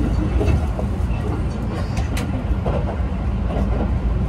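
Steady low rumble of a Keihan 8000 series electric express train running, heard from inside the passenger car.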